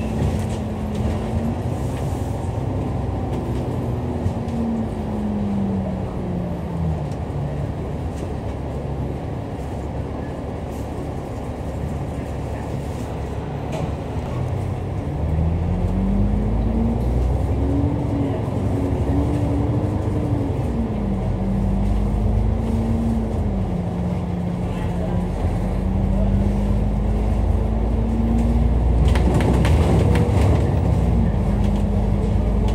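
Dennis Enviro500 MMC double-decker bus engine running, heard from on board. The note sinks low for several seconds in the middle, as when slowing or idling in traffic. About fifteen seconds in it climbs as the bus pulls away, then drops back and settles into a steady run with continuous road rumble.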